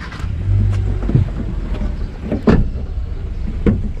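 Several knocks and bumps as people climb into the back seat of a car through its rear door, over a low steady rumble. The loudest knock comes about two and a half seconds in.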